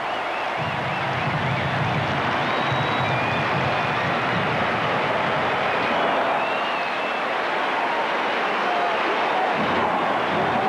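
Large stadium crowd cheering a touchdown: a steady wash of noise, with a few shouts standing out.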